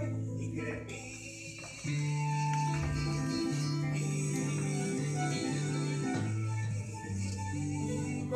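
Background music with guitar. It drops in level about a second in and comes back louder just before two seconds, with held notes from then on.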